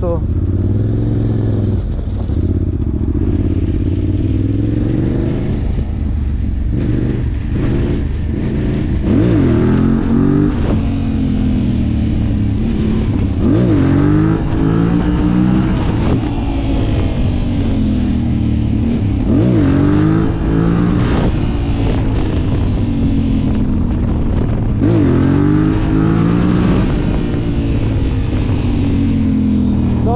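Yamaha Raptor quad's single-cylinder engine being ridden hard, its pitch climbing through the revs and dropping back again and again, with quick sharp blips of the throttle every few seconds. Wind rushes steadily across the microphone.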